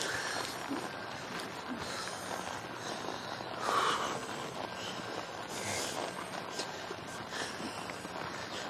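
A ridden horse loping on soft arena sand and snorting, the loudest snort about four seconds in, over a steady outdoor hiss.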